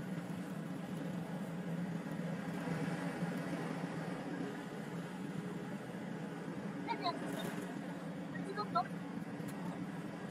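A broom, then a hand brush, sweeping a hard plank floor over a steady low hum.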